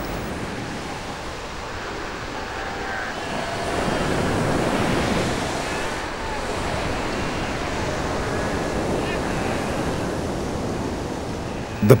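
Ocean surf breaking and washing up a beach in a steady rush, swelling a little about four seconds in.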